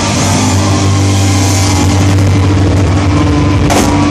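Punk rock band playing live at high volume: distorted electric guitar and bass hold a ringing chord over drums, with a cymbal crash near the end.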